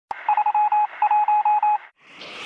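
A single click, then a news-intro ident of short electronic beeps at one steady pitch, in two quick runs of about five beeps each.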